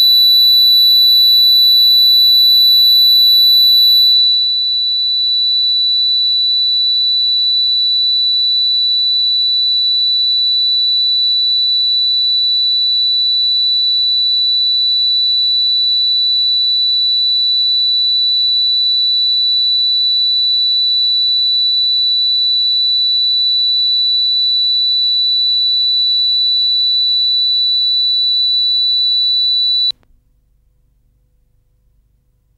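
Loud bars-and-tone test signal from a videotape: one steady, unwavering high-pitched sine tone, with a second, even higher tone over it for the first four seconds that then cuts off, the level dipping slightly at that moment.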